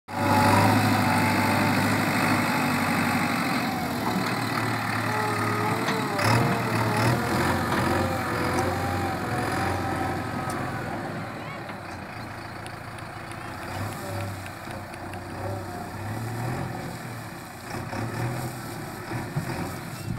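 Diesel engine of a JCB backhoe loader running as the machine drives across the site, loud at first and growing fainter as it moves away.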